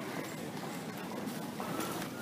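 Footsteps of hard-soled shoes walking on brick paving, over steady street noise.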